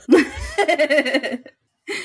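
A woman laughing, a run of quick pulses lasting about a second and a half.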